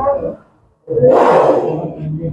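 A white cobra hissing loudly for about a second, starting about a second in after a brief silence: the rasping hiss of an angry, hooded cobra.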